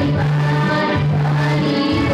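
Two women singing a worship song together, accompanied by an electronic keyboard holding sustained bass notes under the melody.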